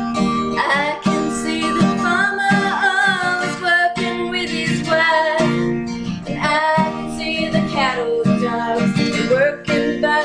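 Acoustic guitar strummed steadily, with a woman singing over it in a country style.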